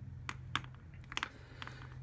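About five short, light clicks and taps of plastic retractable pens being handled, clicked and set down on a desk, over a faint steady low hum.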